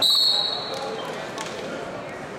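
A referee's whistle blown once: a high-pitched steady blast of just under a second, over the gym's crowd noise, followed by a short knock about halfway through.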